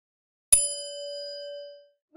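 A single bell 'ding' sound effect: one sharp strike about half a second in, ringing out with a clear main tone and fainter higher overtones and fading away over about a second.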